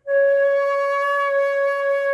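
Concert flute holding one long, steady C#. It is the reference pitch to aim for when bending a D fingering down to C#.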